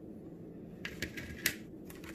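Plastic Oreo tray and wrapper rustling as a cookie is taken from the pack: a few short faint crinkles and clicks about a second in, and one more near the end.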